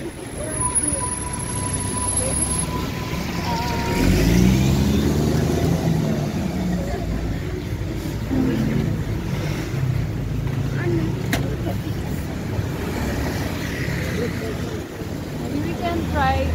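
City street traffic: cars driving past on a busy road, with a vehicle's engine getting louder about four seconds in.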